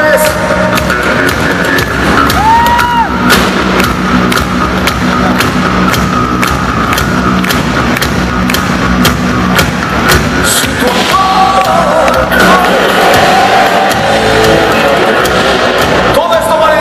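Heavy metal band playing live and loud: distorted electric guitars over bass and drums with steady drum hits, heard from within the crowd. A new melody line comes in about eleven seconds in.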